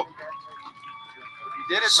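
A man's voice over a public-address system starts reading out a name near the end, after a lull. Through the lull there is only a faint steady high whine.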